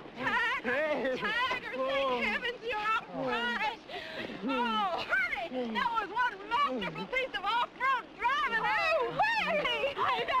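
Several people's excited voices, exclaiming and laughing without a pause.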